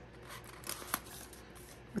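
A few faint clicks and light paper rustles from tweezers lifting a paper sticker off its sheet and setting it down on a planner page.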